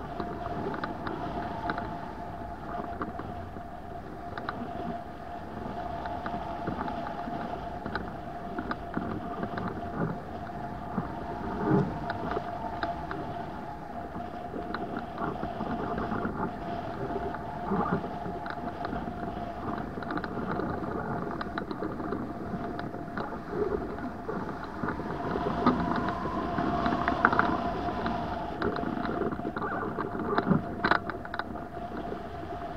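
Wind rushing over a hang glider in flight and its keel-mounted camera, with irregular buffeting in choppy air and a steady high tone running underneath. The rush grows louder for a couple of seconds near the end.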